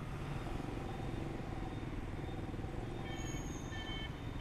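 Steady city traffic heard from a moving motorbike: engine hum and road noise, with a few faint high-pitched tones near the end.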